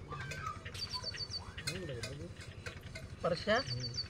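A small bird chirping: two short runs of quick, high notes, about a second in and again near the end.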